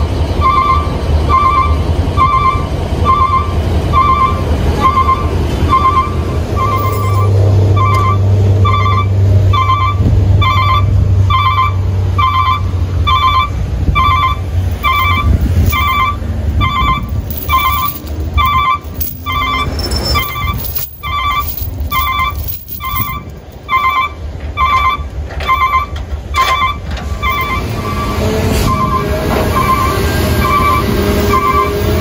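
A truck's reversing alarm beeping steadily, a quick double beep about three times every two seconds, over a diesel engine idling. The alarm marks a truck in reverse gear during the hook-up of a tow chain between the two trucks, and sharp metallic clanks of the chain come through in the second half.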